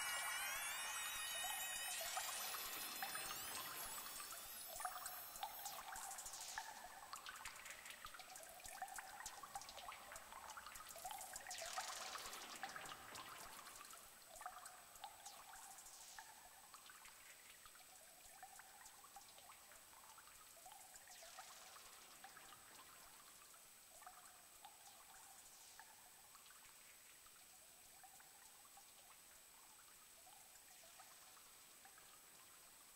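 The dying tail of an electronic synthesizer improvisation: scattered short blips and high trickling noise, with several long falling pitch sweeps. It fades away gradually to very quiet.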